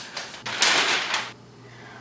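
Paper poster rustling as it is handled on the wall: one short, loud rustle about half a second in, lasting under a second, after a few faint clicks.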